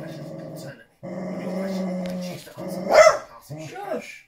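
A pet dog growling in two long, steady rumbles at a treat she is playing with, then giving one sharp, loud bark about three seconds in.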